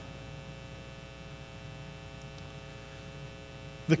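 Steady electrical mains hum with many evenly spaced overtones, unchanging throughout.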